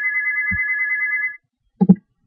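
A steady electronic beep tone made of several pitches held together, cutting off suddenly about a second and a half in. Soft clicks follow, one about half a second in and another near the end.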